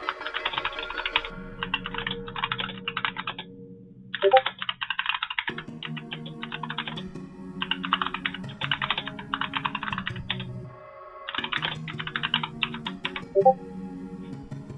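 Computer keyboard typing in quick bursts of a second or two each, with short pauses between, over steady background music.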